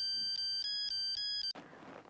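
Electronic phone ringtone playing a quick melody of high beeping tones, cutting off suddenly about one and a half seconds in as the call is answered.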